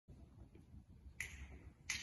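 Two sharp finger snaps, about a second in and near the end, a steady beat counting in the tempo for a song.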